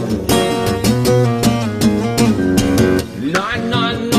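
Acoustic guitar played fingerstyle: plucked melody notes ring over a steady bass line, with a brief dip in loudness about three seconds in.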